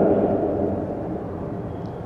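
A pause in a man's speaking voice: the end of his last word dies away during the first second into a low, steady background noise.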